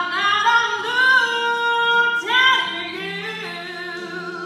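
A woman singing a slow soul ballad into a microphone over a quiet accompaniment track. She comes in loudly and holds a long note, starts a new phrase a little after two seconds in, and sings more softly toward the end.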